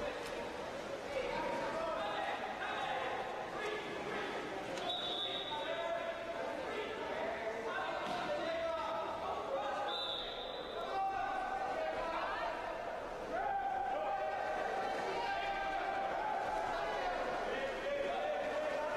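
Indistinct voices of players and spectators echoing in a large indoor pool hall, with two short, high steady tones about five and ten seconds in.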